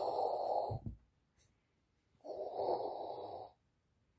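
Two long breathy hisses, each lasting a little over a second, the second about two seconds after the first.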